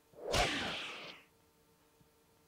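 A single whoosh sound effect that starts sharply, with a brief low thud at its peak, and fades out over about a second.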